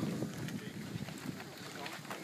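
Quiet outdoor background: a faint, even hiss with no distinct sound standing out.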